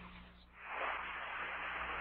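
Steady hiss of a radio communications channel, coming up about half a second in, over a faint low hum.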